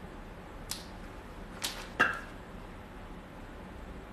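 Two brief swishes of a paintbrush being stroked across canvas, then a sharp clink with a short ring about two seconds in, the loudest sound.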